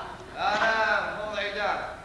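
A stage actor's high-pitched, drawn-out voice in two long phrases, the second starting about a second and a half in.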